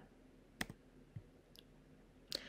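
Near silence broken by a few faint, short clicks, the first a little over half a second in.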